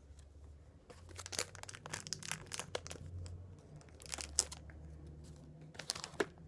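Scissors cutting into thin plastic packaging and hands crinkling and tearing it open: an irregular run of sharp clicks and crackles, with one louder snap about four seconds in.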